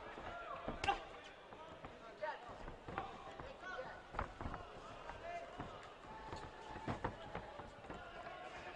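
Sounds of an amateur boxing bout in an arena: scattered short thuds of gloves and feet on the ring canvas, over shouting voices from the crowd and corners.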